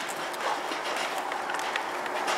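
Plastic wheels of a toddler's push-along walker toy rolling over concrete paving slabs, a steady rattle with irregular clicks.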